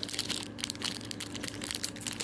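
Foil wrapper of a Pokémon trading-card booster pack crinkling and crackling in rapid, irregular clicks as it is handled and opened by hand.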